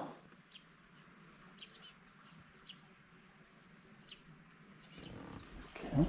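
Small birds chirping faintly: short, high chirps scattered a second or so apart over a quiet background.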